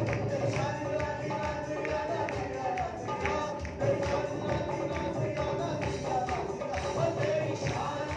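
Punjabi Christian worship song: a man singing a sustained, gliding melody into a microphone over a steady percussion beat, about two to three strikes a second.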